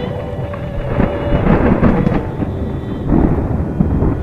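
Rolling thunder with rain, swelling into two louder rumbles, one about a second in and one just after three seconds, over soft music with long held tones.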